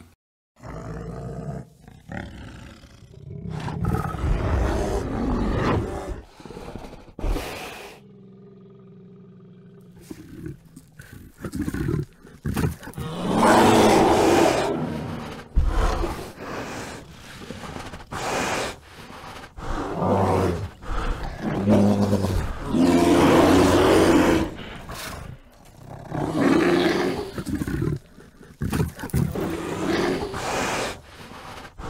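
A bear vocalizing in several loud, irregular bouts of growling calls, with a short quiet break about eight seconds in.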